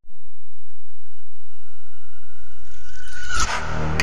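Opening of a hip-hop track: a loud, steady low rumble under a thin high tone that slowly rises, swelling into the full beat about three and a half seconds in.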